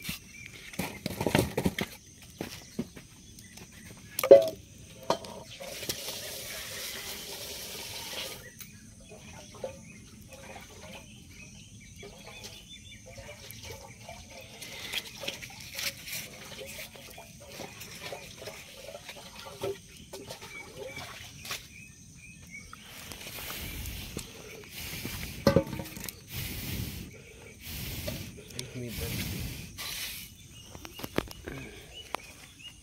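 Split firewood being pushed and knocked against stones while a dying wood fire is tended, with scattered sharp knocks, the loudest about four seconds in and again near the end. There are stretches of rushing noise about six seconds in and through the last several seconds.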